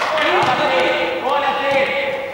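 Players shouting to one another over the thuds of a football being kicked, one at the start and another about half a second in, in a large indoor hall.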